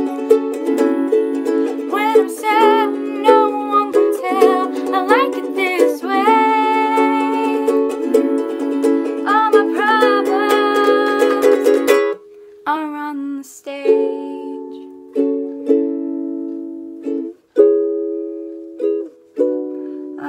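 Ukulele strummed with a voice singing along through the first half. About twelve seconds in, the playing thins to single strummed chords that ring out one after another with short pauses between them, as the song winds down to its end.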